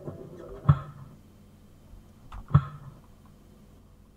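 Two sharp, loud hits about two seconds apart, each trailing a brief low tone, over a faint background.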